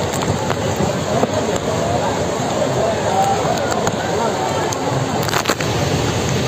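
Steady rush of a fast flash flood and heavy rain, with people's voices faintly calling over it.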